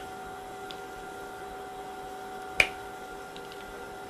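A single sharp click about two and a half seconds in, as a sample vial is pushed into a tight slot of an LC-MS autosampler tray, over a steady hum of lab equipment.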